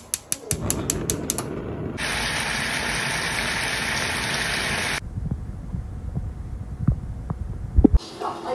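Gas stove igniter clicking about six or seven times a second as the burner catches with a low steady rush. About two seconds in, beef and vegetables sizzle loudly and steadily in a wok, stopping suddenly near five seconds; a quieter low rumble with a few knocks follows.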